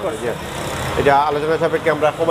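A man talking, starting about a second in. Before that there is a stretch of steady background noise.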